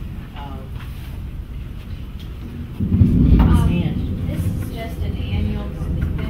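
Soft, scattered voices in a meeting room, with a loud low rumble starting about three seconds in and fading over a second or so.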